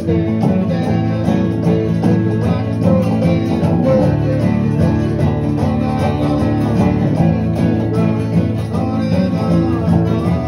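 Acoustic guitars playing a country-style tune together, strummed and picked at a steady pace.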